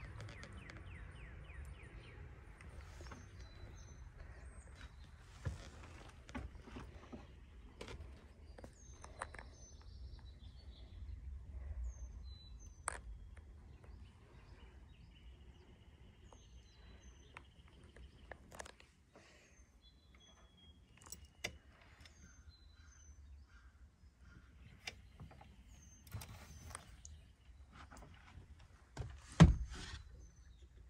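Small birds chirping outdoors in short, repeated high calls, with scattered light knocks and clicks of footsteps as someone steps up into a camper van, and one loud knock near the end.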